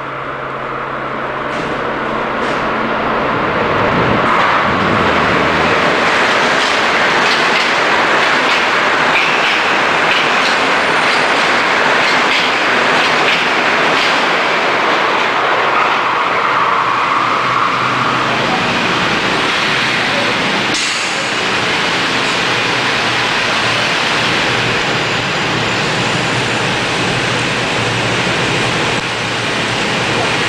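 Metro-North electric commuter train running on the rails: a loud, steady rush of wheel and running noise that builds over the first few seconds and then holds. There is one sharp click about two-thirds of the way through.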